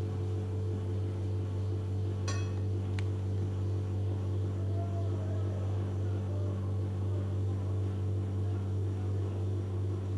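A steady low electrical hum, with two light clinks of a metal spoon against a china soup plate, a little over two seconds in and again about a second later.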